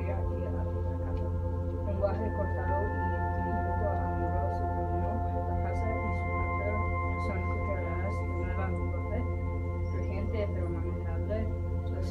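Indistinct chatter of several people's voices over a steady low electrical hum, with a few long held tones that come in and drop out at different pitches.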